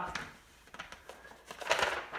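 Sheets of paper being handled and rustled: a few light clicks, then a brief louder rustle near the end.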